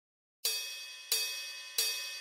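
Song intro: after a brief silence, three evenly spaced cymbal-like strikes, each ringing out and fading.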